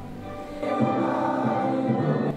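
A large group of people singing together in unison, many voices blending into one sustained sound that swells to full strength about half a second in.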